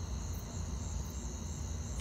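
Crickets chirring steadily in a high, even drone over a constant low rumble.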